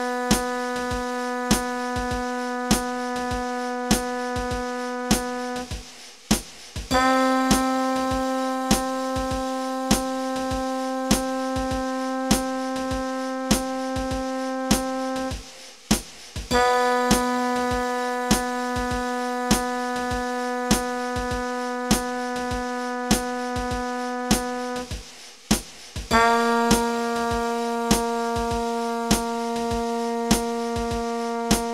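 Long-tone practice track: a sustained instrument note held steady for about eight seconds at a time, with a short break before each new note, the pitch shifting slightly from one note to the next, over a metronome clicking at 100 beats per minute.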